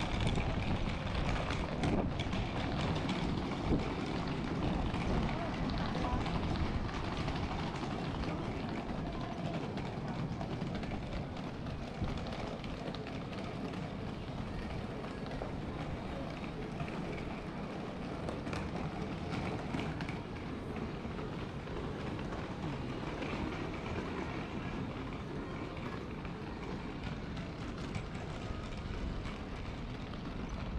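Steady street noise heard while walking along a pedestrian shopping street, with indistinct voices of passers-by.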